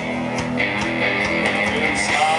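Live rock band playing an instrumental passage between sung lines: strummed electric guitars over bass and drums, with no vocals.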